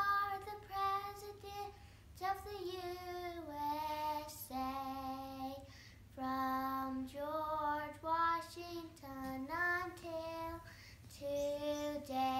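A young girl singing alone without accompaniment: a melody of held notes in several short phrases, with brief breaks between them.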